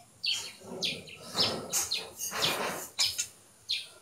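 Small birds chirping in the background: a run of short, falling, high-pitched chirps.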